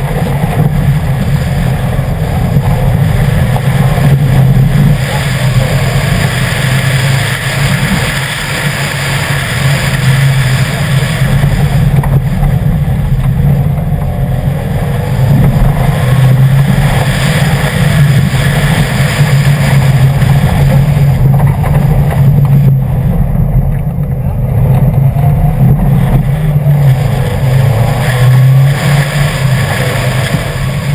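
2011 Subaru WRX's turbocharged 2.5-litre flat-four running hard through a gravel rally course, its pitch rising and falling as the driver accelerates and lifts for corners, over the noise of tyres on loose gravel.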